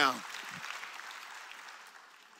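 Scattered applause from a church congregation, fading out over about two seconds.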